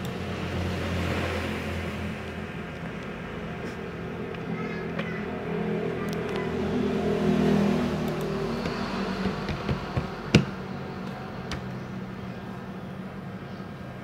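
A motor's low hum that swells to a peak about seven seconds in and then fades. A few sharp clicks fall between about nine and eleven seconds in, the loudest a single click near ten seconds.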